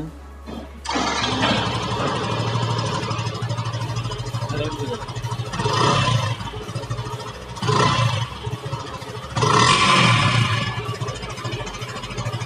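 Yamaha FZ V3's 149 cc single-cylinder engine starting about a second in, then idling, with three short throttle blips that each raise the revs.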